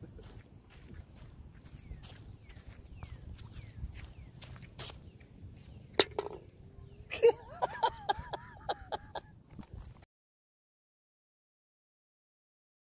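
A camera moving low over putting-green grass, with a steady low rumble and many small bumps and clicks. About six seconds in there is a sharp clack as the golf ball drops into the cup, followed by a short laugh. The sound cuts off about ten seconds in.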